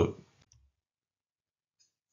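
The tail of a spoken word, then near silence broken by a single faint click near the end, the click of the lecture slide being advanced.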